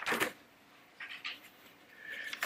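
A person's short breathy vocal sounds at the microphone: a louder one at the very start, then two softer ones about a second in.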